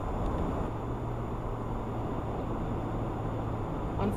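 Steady road noise of a car driving, heard from inside the cabin: a low engine and tyre hum with an even rush of noise above it.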